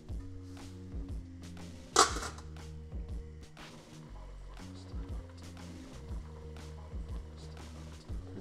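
Background music with sustained low notes and chords that change about every second. One sharp knock, the loudest sound, comes about two seconds in, and a few faint clicks follow.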